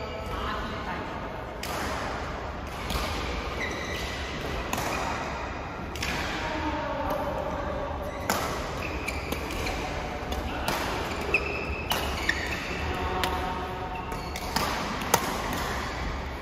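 Badminton rally: rackets striking the shuttlecock in sharp smacks about a second apart at irregular intervals, with short high squeaks of shoes on the court floor between them.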